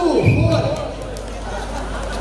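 Voices talking and calling out, with a single dull thud a quarter of a second in.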